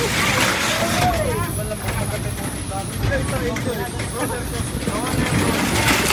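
A motor vehicle running in motion, a steady low rumble, with people's voices talking over it.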